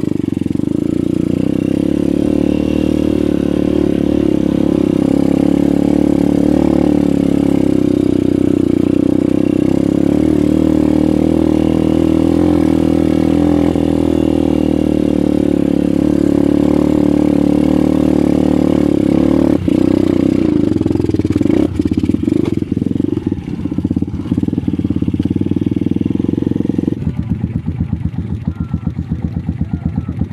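Dirt bike engine running steadily at an even pitch while riding a trail. About three seconds before the end the sound changes to a lower, rapidly pulsing beat.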